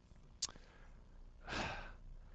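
A man's short audible breath near the end, a little under half a second long, taken in a pause before speaking again. A single brief click comes about half a second in.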